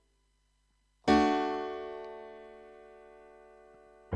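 A single piano chord struck once on a keyboard about a second in, then left to ring and die away slowly; silence before it.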